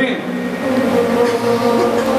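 A man's voice, amplified through a handheld microphone, holding one long steady drawn-out vowel for about two seconds without breaking into words.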